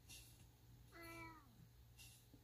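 A domestic cat meowing once, faintly, about a second in: a single short call that falls in pitch at its end.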